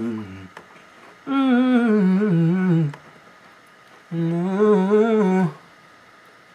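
A man humming a wordless melody in short phrases of about a second and a half each, with pitch that wavers and slides, and brief pauses between them.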